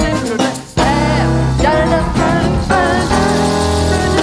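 Live Latin-jazz band playing: grand piano, electric keyboard, electric bass and drums, with a sung melody line over them. The band cuts out briefly just under a second in, then comes back in together.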